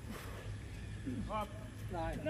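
Brief shouted calls from the men's voices, one short call about a second and a half in and another starting near the end, over a steady low outdoor rumble.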